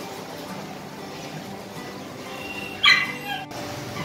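Soft background music, with one short high-pitched animal yelp about three seconds in.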